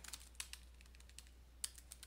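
Computer keyboard being typed on: faint, irregular light keystrokes as a word of code is typed and a typo corrected.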